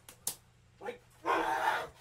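A man's harsh, bark-like yell lasting more than half a second, starting just past a second in, preceded by a sharp click about a quarter second in.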